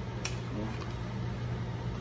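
A metal spoon stirring in a stainless steel pot, with one light clink of the spoon against the pot a quarter second in, over a steady low hum.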